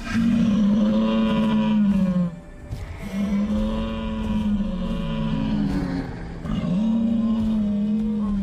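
Sound-designed dinosaur calls from an animated documentary: a herd of Edmontosaurus calling, three long, low, steady-pitched calls of about two to three seconds each, with two calls overlapping in the middle.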